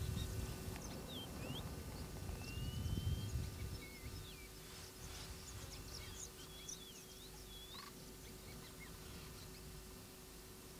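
Birds calling with many short chirps and whistled glides scattered throughout, over a low wind rumble on the microphone during the first few seconds.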